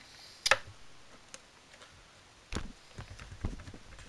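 Plastic clicks and knocks from hands working the plastic casing of a small CRT television: one sharp click about half a second in, a few faint ticks, then duller knocks in the second half.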